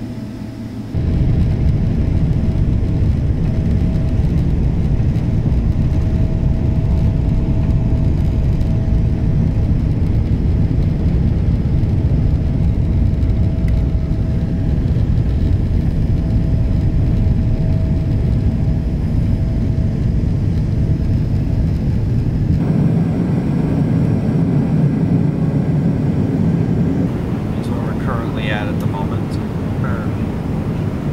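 Jet airliner engines at takeoff power, heard inside the cabin as a loud, steady rumble with a faint steady whine through the takeoff roll and climb-out. The sound changes abruptly about two-thirds of the way through.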